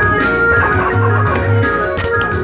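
Electric keyboard played with a sustained organ-like sound: held chords that change every half second or so, over low bass notes.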